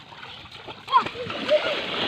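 Shallow water splashing as people wade and play in it, with a sharper splash about a second in.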